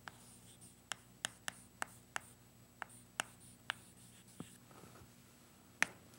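Chalk writing on a chalkboard: about a dozen sharp, irregularly spaced taps as block capital letters are written.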